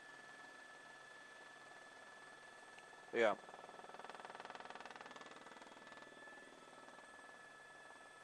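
Faint, steady helicopter cabin hum with a thin high whine, picked up by the reporter's headset microphone. It swells slightly with a fine, fast pulsing for a couple of seconds after the middle.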